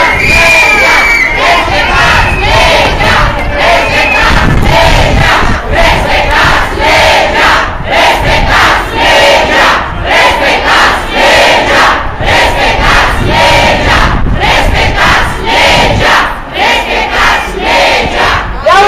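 A large protesting crowd chanting and shouting slogans together, loud and rhythmic.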